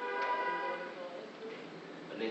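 A person's voice holding one sung or hummed note for about a second, then fading away.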